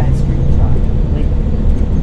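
Inside the cabin of a 2013 New Flyer XDE40 diesel-electric hybrid bus on the move: a steady low rumble from its Cummins ISB6.7 diesel engine and the road, with people talking in the background.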